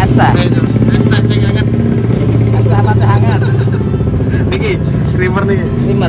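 A motor vehicle engine running steadily close by, its hum strongest in the middle seconds, with scraps of voices over it.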